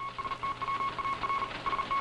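A radio signal tone beeping on and off in irregular short and long pulses over a hiss of static.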